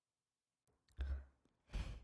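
A woman sighing in exasperation close to a microphone: two breathy puffs, about a second in and again near the end, each with a low thump of air hitting the mic.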